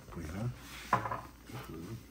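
Soft voices: short murmured sounds and reactions from the people around the table, with no clear sound other than speech.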